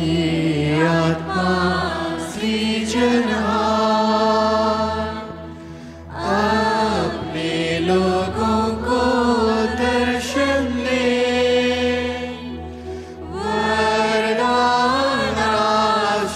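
Devotional hymn music: a voice sings long, wavering phrases over a steady low drone, with short breaks about six seconds in and again near thirteen seconds.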